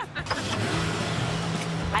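Motor vehicle running on the street: a steady low engine hum under an even rushing noise that builds about half a second in.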